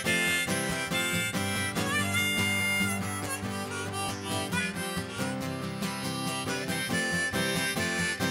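Harmonica solo played in a neck rack over strummed acoustic guitar chords, held and bending notes in a bluesy country break.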